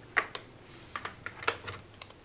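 Handling noise of an Apple USB SuperDrive being lifted out of its cardboard box with its USB cable: a few light, separate clicks and taps over faint rustling.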